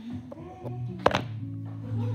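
Background music with steady held notes, and a single sharp knock about a second in, from plastic toy horse figurines being handled.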